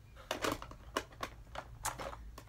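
Small makeup containers clicking and knocking against one another as they are handled and sorted through: several sharp, irregular clicks over about two seconds.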